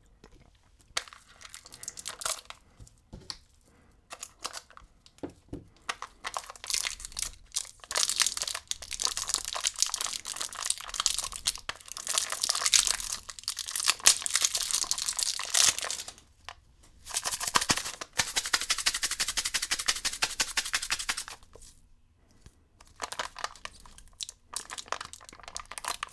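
Plastic candy packaging crinkling and tearing in bursts, as a lollipop-and-powder sweet is unwrapped.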